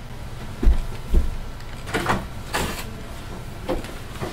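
Two heavy footsteps on a floor, then a wooden interior door being opened, with two scraping, rattling sounds about halfway through and a short knock near the end.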